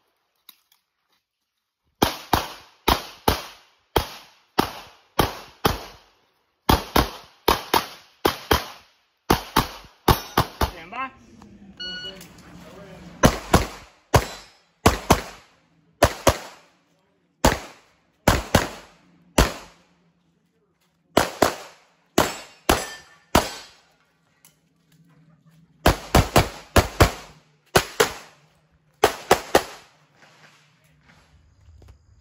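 Pistol shots fired in quick pairs and short strings, each a sharp crack, in a series of bursts broken by brief pauses.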